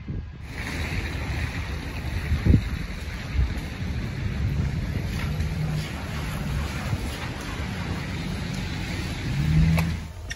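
Wind rushing and buffeting on a phone microphone, a steady noise, with a low thump about two and a half seconds in.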